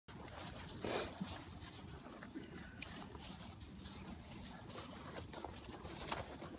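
A dog snuffling, with one short, louder sniff about a second in, over faint scuffs and clicks on gravel.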